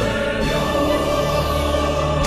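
A choir and orchestra holding one long, steady chord in a show tune.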